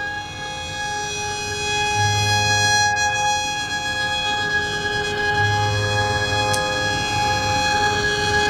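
Carnatic violin holding one long, steady note over the tanpura drone.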